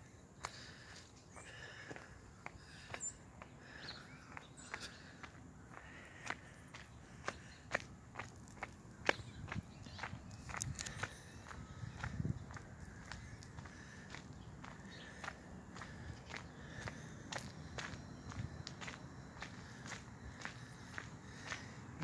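Footsteps of the person filming, heard as irregular short clicks over faint outdoor background noise.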